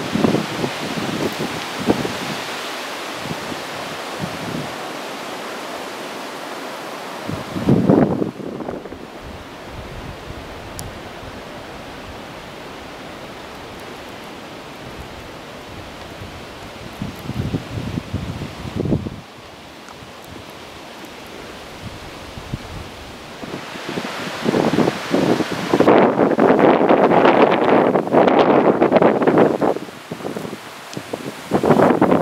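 Strong, gusty wind buffeting the microphone and rustling through the trees' fresh spring leaves. The gusts swell and fade, with a loud one about eight seconds in and the loudest near the end.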